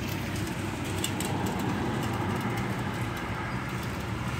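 Road traffic: a motor vehicle running past, its steady rumble swelling a little midway and easing off.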